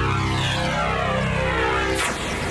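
Opening sound effect of a recorded song played over loudspeakers: a heavy low drone with many tones sliding downward in pitch, changing about two seconds in as the music begins.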